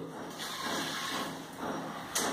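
Water poured from a tumbler into a pressure cooker holding rice and lentils, a steady splashing fill.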